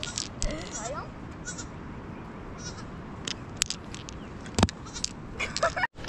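Sheep bleating a few times, the last calls wavering near the end, with a few sharp clicks in between, the loudest about four and a half seconds in.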